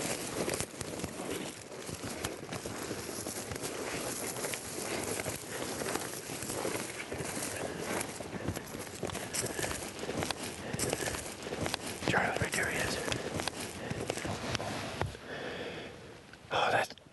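Footsteps of several people pushing through low, dry tundra brush, with a continuous crunching and rustling of twigs and leaves.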